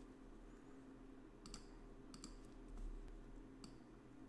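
A few faint computer mouse clicks over near silence: one about one and a half seconds in, a quick cluster a little after two seconds, and one more near the end.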